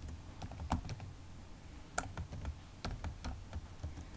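Typing on a computer keyboard: sparse, irregular key clicks, one sharper than the rest about two seconds in.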